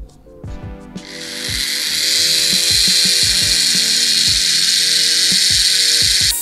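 Handheld rotary tool with a cutoff disc cutting into a plastic diecast-car base: a high-pitched grind that starts about a second in, builds over the next second and then holds steady and loud. Background music with a steady beat plays underneath.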